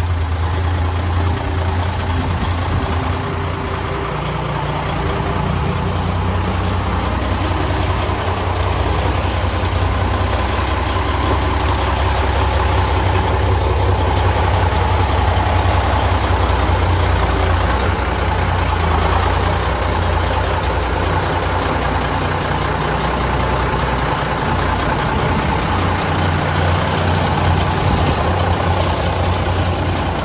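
Military six-wheel-drive cargo truck's engine idling steadily with a deep, even rumble.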